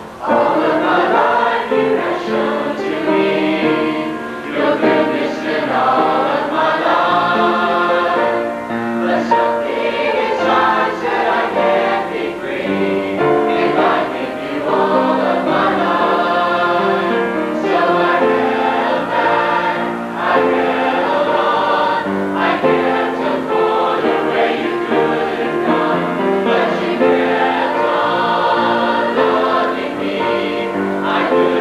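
A girls' choir singing an anthem in several voices. It comes in all together at the very start and sings on without a break.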